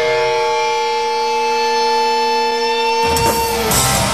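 Live rock band: held electric guitar notes ring out for about three seconds, then the full band with drums crashes in.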